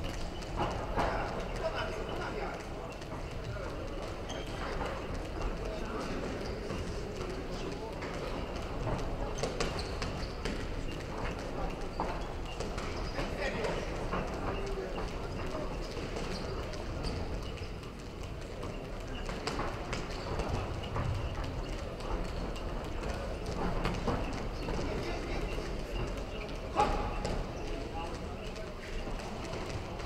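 Sounds of an amateur boxing bout in a hall: the boxers' feet stepping and shuffling on the ring canvas with occasional knocks of gloves landing, over voices calling out in the hall. One sharper knock stands out near the end.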